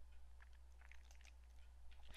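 Near silence: a steady low hum with a few faint clicks of a computer mouse.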